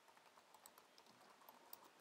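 Faint computer keyboard typing: a quick run of soft key clicks as a short phrase is typed.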